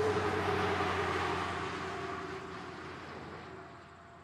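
City street traffic noise with a steady engine hum, fading out gradually over the few seconds.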